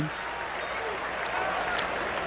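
Stadium crowd applauding and cheering after a running play, a steady wash of crowd noise.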